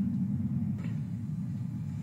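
A low, steady rumble from a film's sound design, fading slowly.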